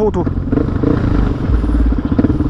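Suzuki DR-Z400SM single-cylinder engine running at a steady cruising speed, one even note throughout. Wind rumbles on the microphone near the end.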